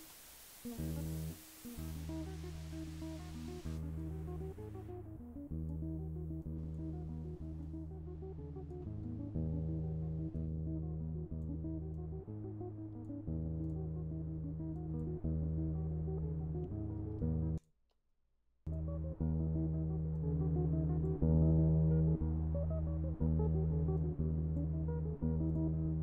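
Recorded fingerstyle acoustic guitar, a Dorian-mode Celtic-style tune, played back from the pad-mic track. It opens with loud white-noise hiss, which is cut away in steps over the first several seconds as a parametric EQ removes the high frequencies, leaving a muffled, bass-heavy guitar. The playback stops for about a second around two-thirds of the way through, then resumes.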